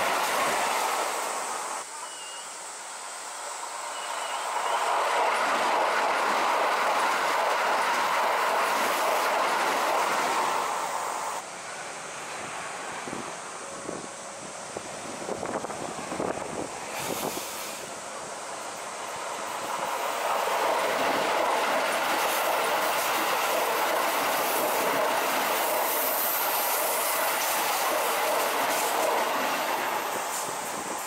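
Keikyu electric commuter trains running past on a curved stretch of track, their noise swelling loud as each goes by. A quieter middle stretch has the clickety-clack of wheels over rail joints as a train approaches, and it swells again to a loud pass late on.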